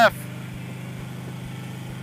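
Harley-Davidson touring motorcycle's V-twin engine running steadily at cruising speed, a low, even drone that holds the same note throughout.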